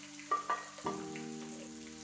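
Diced onion and peas sizzling faintly in hot spiced oil in a wok, with two soft knocks shortly after the start as the wooden spatula pushes them in. Gentle background music with held notes comes in about a second in.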